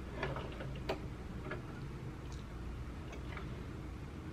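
Light clicks and ticks of hands working at a small plastic home sewing machine while threading the needle: several small clicks in the first two seconds, a few fainter ones later, over a low steady hum.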